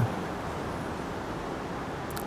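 Steady, even background hiss of room tone, with no other distinct sound.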